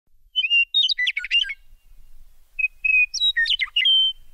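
Bird song: two phrases of quick, high chirping notes, the first about half a second in and the second from about two and a half seconds.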